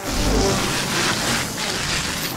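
Cartoon sound effect of air rushing out of released balloons: a loud continuous hiss with a low rumble in the first half second, as the balloons deflate.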